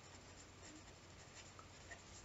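Faint scratching of a felt-tip marker writing on paper, barely above near-silent room tone.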